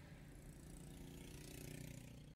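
Faint, steady low engine rumble of slow road traffic heard from inside a car, with a hiss building in the second half as vehicles pass close by.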